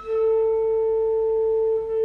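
Live concert music: a wind instrument starts one long note and holds it steady at a single pitch, with fainter notes sounding above it.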